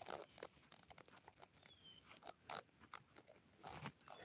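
Near silence: room tone with a few faint, scattered clicks and a brief faint high chirp about halfway through.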